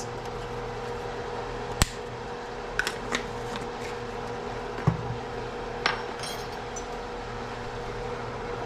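A few separate sharp clicks and knocks as spice jars, their plastic lids and a metal measuring spoon are handled and set down on a kitchen counter, over a steady low background hum.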